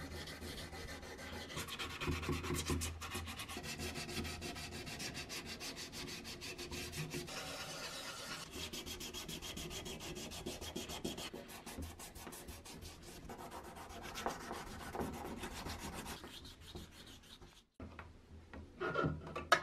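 Sandpaper rubbed by hand over the primer coat of a metal oil-lamp part, in rapid back-and-forth scrubbing strokes. It stops abruptly just before the end.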